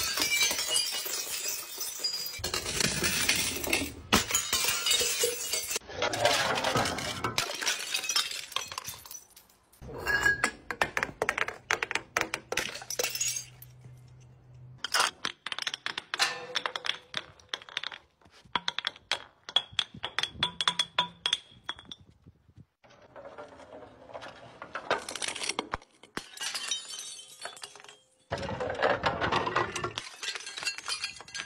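Glass bottles tumbling down concrete steps, clinking and clattering as they strike step after step and shattering into shards. The sound comes in a series of separate runs of rapid impacts with short pauses between them.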